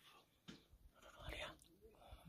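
Near silence with faint whispering: a hushed voice breathes a few quiet words, clearest about one and a half seconds in.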